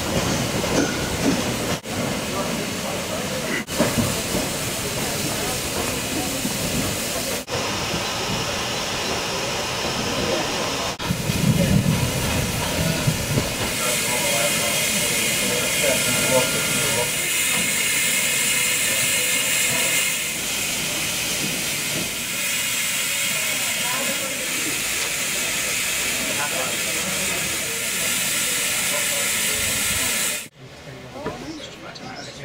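LMS Black Five 4-6-0 steam locomotive standing at a platform, steam hissing steadily from the engine, with a louder, deeper surge about eleven seconds in.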